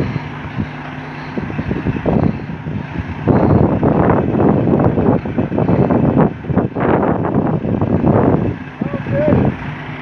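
Voices shouting encouragement, loudest and most continuous from about three seconds in until shortly before the end, over a steady low hum from the truck's idling diesel engine.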